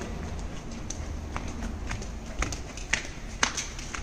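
Footsteps on a concrete floor, a sharp step about every half second, over a low steady hum.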